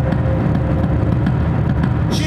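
Live industrial band playing loud, dense, low-pitched electric guitar and electronics, with no vocal line in this stretch.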